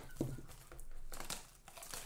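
Clear plastic shrink wrap from a trading-card box crinkling in the hands, in several separate rustles with a short lull a little after the middle.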